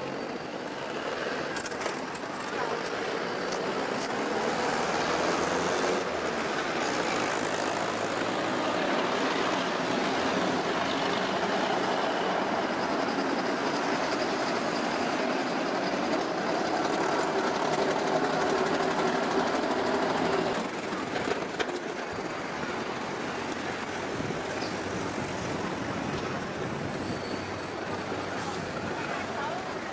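City street traffic: a steady wash of bus and vehicle engine noise, with a bus passing close by. The noise swells over the first few seconds and drops suddenly about twenty seconds in.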